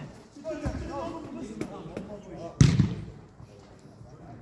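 A football struck on an artificial-turf pitch: one loud, sharp thud with a deep boom about two and a half seconds in, after a softer thump near the start, with players' voices faint in between.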